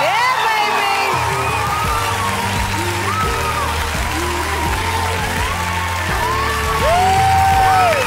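Studio audience applauding and cheering with whoops, over steady background music.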